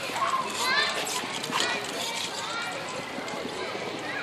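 Background voices of children and adults chattering and calling out, over the light clatter of a toddler's balance bike wheels rolling across stone paving.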